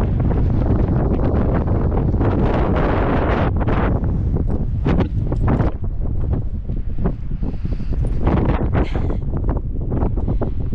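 Strong, gusty wind buffeting the camera microphone: a loud, low rumble that surges and dips irregularly with the gusts.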